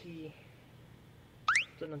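Short snatches of voices, with a brief, sharp rising sound about one and a half seconds in, the loudest moment.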